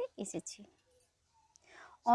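Soft, whispered speech fragments in the first half second, then a brief near-silent pause and an audible in-breath before normal talking resumes.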